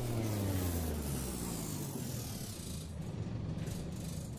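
A machine sound effect: a low hum with many falling whining tones over the first two seconds, under a dense, steady mechanical rattling that runs on after the hum fades.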